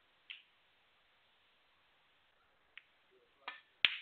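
Sparse sharp clicks of snooker cue and balls: one about a third of a second in and a faint tick later. Near the end come two clicks close together, the second the loudest, as a shot is played.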